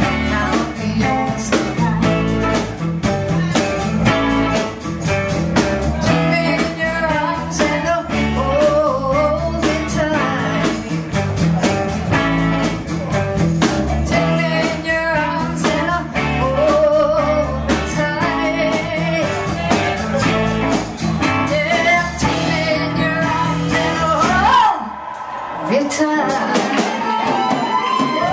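Live blues-rock band playing, with a woman singing lead over electric guitars, bass and drums. About 25 seconds in the bass and drums stop for a moment on a break, then the band comes back in.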